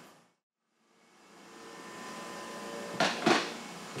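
A moment of dead silence, then a steady background hum fading in, with two short knocks close together about three seconds in.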